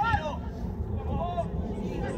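Voices calling out across a football pitch during play, a couple of short shouts over a steady low rumble.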